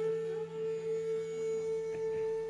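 Background music: a single sustained note held steady, over a faint low hum.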